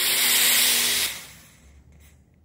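Stage fog machine blasting a jet of fog: a loud hiss with a low steady hum underneath, cutting off about a second in and fading away.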